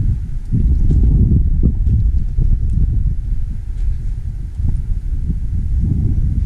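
Wind buffeting the camera's microphone: a loud, gusty low rumble that rises and falls irregularly.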